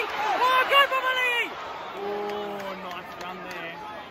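A young man's excited shouting in drawn-out, sung-out calls for the first second and a half, then a lower, quieter held voice about two seconds in, over the steady murmur of a stadium crowd.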